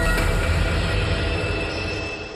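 News-bulletin intro music: a held synthesized chord over deep bass, fading away toward the end.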